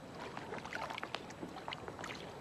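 Water lapping against the shore in small, irregular splashes and ticks over a light hiss.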